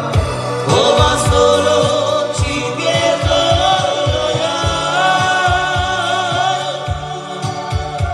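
Two male voices singing a song live into microphones over a Korg Pa1000 arranger keyboard playing the accompaniment, with a steady bass and drum beat. The voices come in about a second in.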